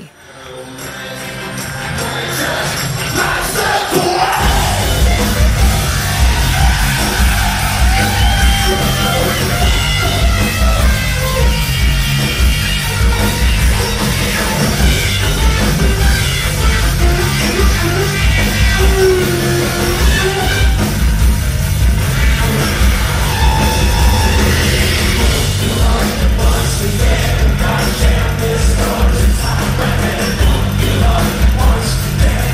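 Live concert recording of an industrial rock band playing the song's noise-solo section: a noisy, melodic synth lead over drums and bass. It fades in, and the heavy low end comes in about four seconds in and stays loud.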